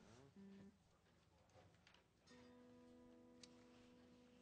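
Very faint amplified Gibson SG electric guitar notes: a short note just after the start, then a single steady note held from about halfway through.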